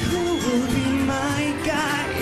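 A woman singing a pop ballad live into a microphone over instrumental backing, her voice drawn out in held, sliding notes.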